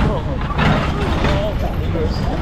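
Reverchon roller coaster car running along its steel track with a steady low rumble and wind rush, with wavering, gliding tones of riders' voices over it.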